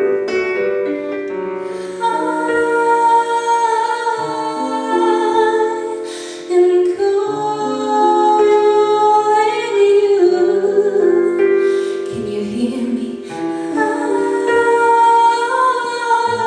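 A woman singing long, held notes with vibrato into a microphone, accompanied by sustained electric keyboard chords.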